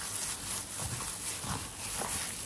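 A plastic-gloved hand mixing wet kimchi seasoning of chives, carrot, onion and chili paste in a metal tray: squelching and plastic-glove rustling with each stroke, in quick repeated strokes about twice a second.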